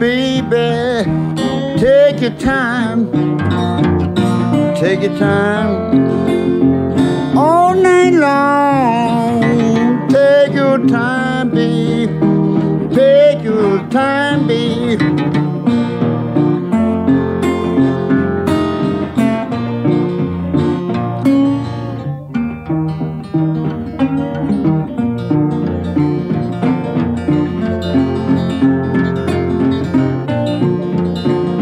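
Acoustic blues guitar playing an instrumental passage, with notes that bend and glide up and down in the first part and steadier picked notes after.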